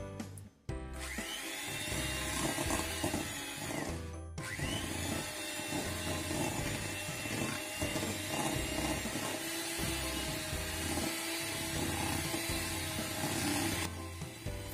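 Electric hand mixer beating cream cheese and sugar in a stainless-steel bowl. The motor whine starts about a second in, breaks off briefly around four seconds, then runs on steadily, with background music underneath.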